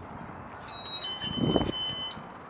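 Electronic door-entry chime sounding as a glass shop door is pulled open: two steady high notes, the second starting about a second in, with a soft thud from the door partway through.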